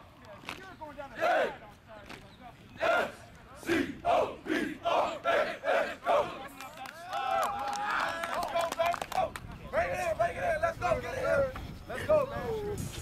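A football team shouting together during warm-up drills: a string of short, loud group yells about once a second, then several voices yelling in longer, overlapping calls over the last few seconds.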